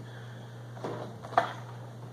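Hard plastic clamshell lure package being handled and turned in the hand, with a faint rustle and one light click a little past halfway, over a steady low hum.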